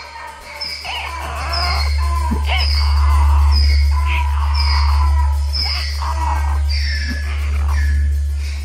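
Live experimental rock music: a loud, steady low bass drone under a run of short, high, falling squeals that repeat a little more than once a second, swelling louder about two seconds in.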